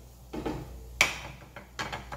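Cooking utensils knocking against a frying pan and the countertop: a sharp clack about a second in, then a few lighter clicks near the end, as a fork and wooden spatula turn and fold a frying buñuelo.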